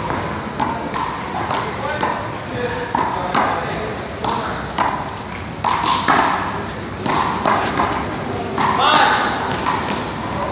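Handball rally: a small rubber ball repeatedly smacking against a concrete wall and the ground in quick irregular strikes, with people's voices around the court.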